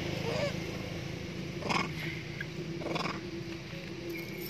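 Long-tailed macaques giving short calls: a brief wavering call near the start, then two sharper calls about a second apart, over a steady low hum.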